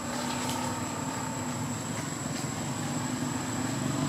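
Steady low engine rumble of a running vehicle, with a thin, steady high-pitched tone above it and a few faint ticks.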